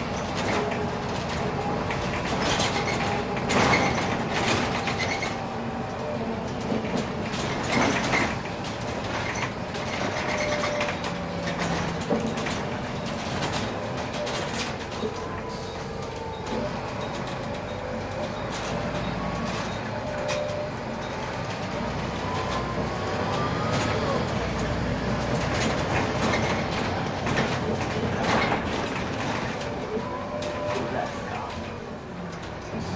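Cabin noise of a moving Volvo 7000 low-floor city bus: a steady rumble of engine and road noise with knocks and rattles from the body and fittings, and a whine that slides up and down in pitch as the bus changes speed.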